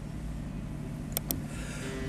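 Low steady hum and room noise through the microphone and sound system during a pause in the recitation, with two quick clicks a little over a second in.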